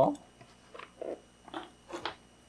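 A few short, soft rustles and taps from unpacking: a plastic-wrapped display base and polystyrene packaging being handled.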